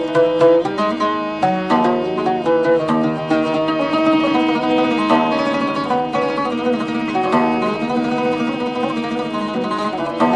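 Instrumental Gulf song passage led by an oud, a quick melody of plucked notes with some held tones beneath.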